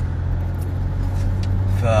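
Steady low drone of a car heard from inside the cabin, engine and road noise running without change.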